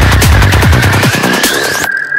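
Dark electronic dance track at 148 bpm: a pitch-dropping kick drum pulses over bass, then the low end drops out about a second in as a rising sweep builds. It cuts to a sudden break near the end, leaving one held high tone.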